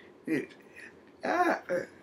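A woman's voice making three short wordless sounds. The longest and loudest comes about a second in and is followed closely by a shorter one.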